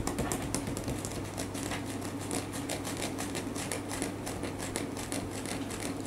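Fingers scratching and tapping on a split-bamboo mat: a rapid, irregular clatter of small clicks over a steady low hum.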